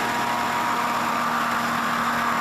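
Rescue hovercraft's engine and propeller running at a steady speed: an even drone with a constant pitch over a rushing noise.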